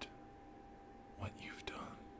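A man's soft, whispered speech: one short phrase a little over a second in.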